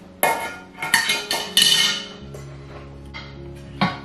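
Cookware clattering: a metal steamer basket and lid knocking against a pan, several sharp ringing clinks in the first two seconds.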